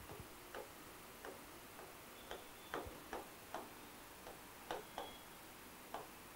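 Marker pen writing on a whiteboard: faint, irregular short taps and squeaks as the letters are stroked out.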